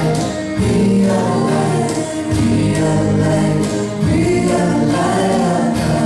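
Live band performance with several voices singing long held notes together over acoustic guitars, keyboard and a cajon keeping a steady beat.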